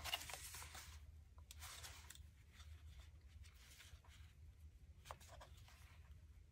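Near silence: a few faint rustles of paper and card being handled, over a low steady room hum.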